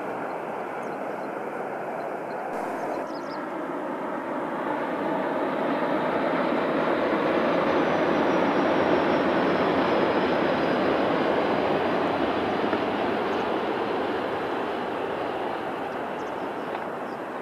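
A Tohoku Shinkansen high-speed train passing along the viaduct at speed. Its rushing roar swells over about four seconds, peaks near the middle and fades away, with a faint high whine that falls slowly in pitch as it goes by.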